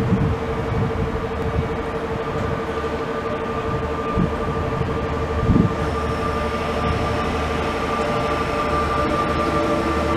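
Passenger train sounds at a station platform: a steady electric hum, joined about six seconds in by the rising whine of a blue double-deck passenger train drawing into the platform and growing slowly louder. A couple of short low thumps come before it.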